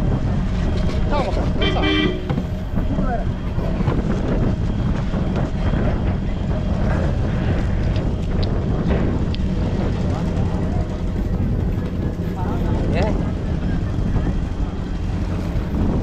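Steady low rumble of a fishing boat's engine running, with a brief horn toot about two seconds in.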